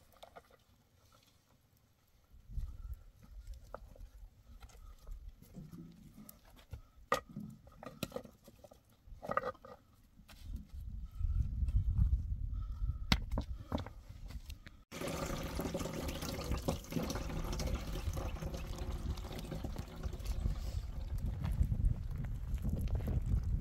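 Scattered knocks, taps and scrapes of cinder blocks being set in place by hand. About two-thirds of the way through these give way abruptly to a steady outdoor rumble and hiss.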